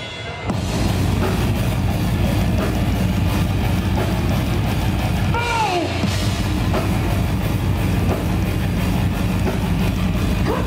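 Live heavy metal band playing loud, with distorted electric guitar, bass and drum kit, kicking back in about half a second in after a brief drop. About halfway through, a high note slides downward over the band.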